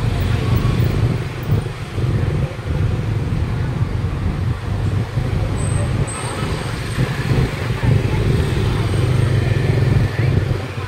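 Busy street ambience: motor traffic running with a steady low rumble, and indistinct chatter from people.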